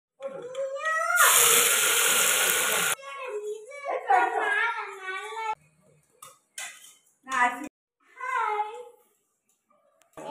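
High, pitch-bending voices, a small child's among them, in short untranscribed bursts. A loud hiss starts suddenly about a second in and cuts off sharply about two seconds later.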